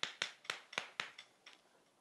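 Chalk writing on a chalkboard: a quick, uneven run of sharp taps from short chalk strokes that stops about a second and a half in.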